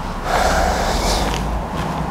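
A person breathing out noisily in one breath about a second long, over a steady low hum in the room.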